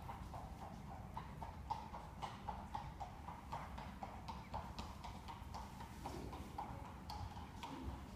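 A horse's faint, regular hoofbeats, about four a second, as it works in a sand arena.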